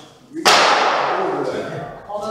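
A sudden loud thump about half a second in, followed by a hissing noise that fades away over the next second and a half.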